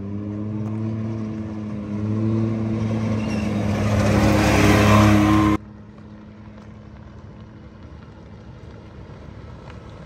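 A vehicle engine running, climbing in pitch and growing louder, cut off abruptly a little past halfway. A much quieter steady rumble follows as a pickup truck approaches over a dirt road.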